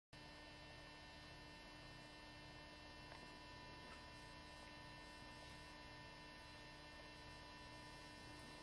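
Near silence: a faint steady electrical hum made of several thin tones, with a couple of tiny ticks about three and four seconds in.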